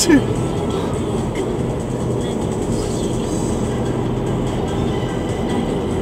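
Steady road and engine noise of a car driving at about 37 mph, heard from inside the car's cabin.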